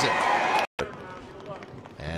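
Ballpark crowd cheering and clapping, cut off abruptly less than a second in. A quiet ballpark ambience follows, with faint distant voices.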